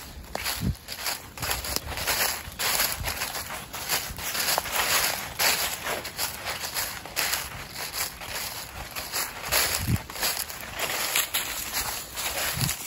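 Footsteps crunching through deep, dry fallen-leaf litter at a walking pace, each step a rustle of dry leaves.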